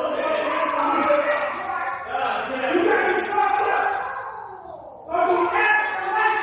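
A person yelling with long drawn-out cries and no clear words. The voice fades about four seconds in and comes back loud near the end.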